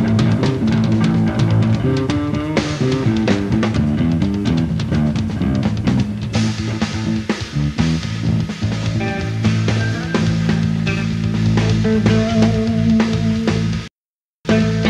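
Live rock band playing loud: electric guitar and bass over a drum kit, with sustained low bass notes and a quick stepping run of notes in the first few seconds.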